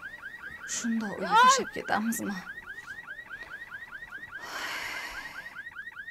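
Car alarm sounding a rapid repeating warble, about five rising-and-falling chirps a second, with a brief hiss about two-thirds of the way through.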